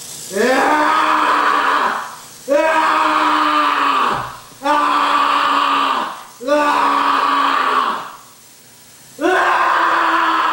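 A person's voice giving five long monster screams, each sliding up in pitch at its start and then held for about a second and a half.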